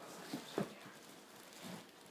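Short rustles and knocks of packaging being handled as an amp head wrapped in a plastic bag is lifted out of its cardboard box, loudest just after half a second in.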